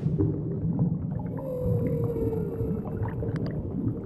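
Underwater sound effect: a low watery rumble with scattered small pops, and one long whale call about a second and a half in that slowly falls in pitch.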